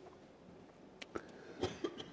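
A man coughing quietly into his hand: about four brief, short coughs in the second half of a pause in his talk.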